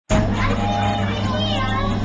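Children's voices chattering over a steady low hum heard from inside a moving passenger vehicle.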